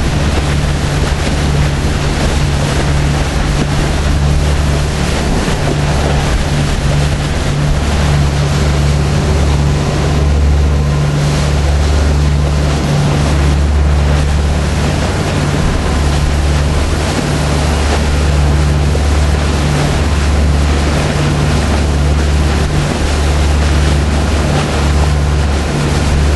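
Sportfishing boat's engines running steadily at cruising speed, a deep low drone under the rushing hiss of the churning wake.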